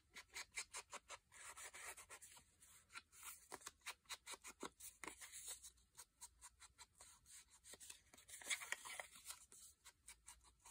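Faint, quick, repeated scratchy strokes of an ink applicator rubbed along the edges of paper pieces to ink them, with a slightly louder flurry near the end.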